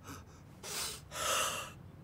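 Two breathy gasps from an alarmed animated character, a short one and then a longer one.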